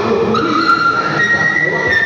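A woman singing into a microphone over a church PA, holding a long high note that steps up in pitch about a second in.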